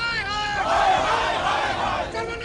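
A crowd of protesters shouting together, many voices overlapping and loudest in the middle.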